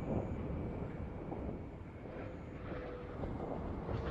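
Low, steady rumble of Space Shuttle Atlantis rolling out on its main landing gear after touchdown, drag chute out, as the nose comes down toward the runway.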